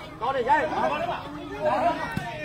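Several people talking over one another: spectators' chatter, at a moderate level.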